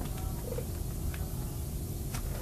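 Steady low hum with a few faint, light knocks.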